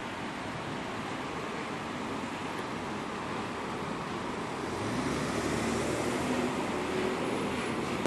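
Road traffic noise, with a 2014 NovaBus LFS articulated hybrid city bus (Cummins ISL9 diesel, Allison EP 50 hybrid drive) approaching. From about five seconds in it grows louder and a low engine hum comes up as it draws near.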